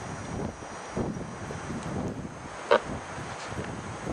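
Wind buffeting the microphone, a steady rushing rumble, with one short sharp sound about three-quarters of the way through.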